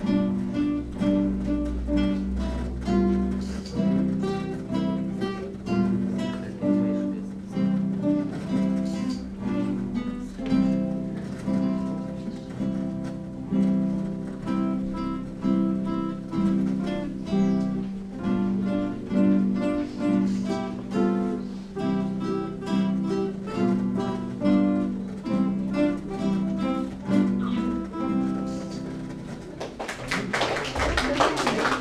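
An ensemble of classical nylon-string guitars playing an exercise piece together, plucked notes in a steady rhythm, dying away near the end.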